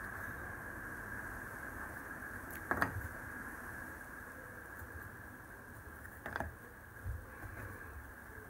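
Small pieces of engraved plywood being handled: a few light clicks and knocks, one about three seconds in and two more late on, over a faint steady hiss.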